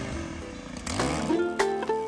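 A handheld gas-powered brush-clearing tool's small engine running, its pitch rising about a second in. Then background music with plucked-string notes comes in and is the loudest thing.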